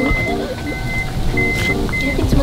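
A minivan's power sliding door warning beeper sounding a repeating high beep, four beeps in two seconds, as the door is operated. Background music plays under it.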